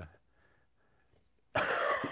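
A short near-silent pause, then about one and a half seconds in a man bursts out in a sudden, loud, breathy laugh.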